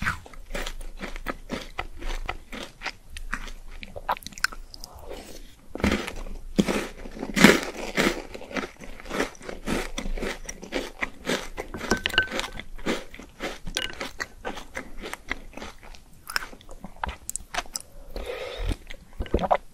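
Close-miked eating: a person chewing and crunching pink balls spooned from a bowl of milk, with many sharp, irregular crunches. The loudest crunch comes about seven and a half seconds in.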